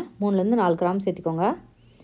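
A woman speaking in a short phrase, stopping about one and a half seconds in.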